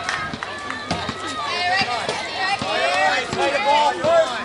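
Several high-pitched young voices calling out and cheering at once, overlapping and growing louder through the second half. A few sharp claps or knocks cut through them.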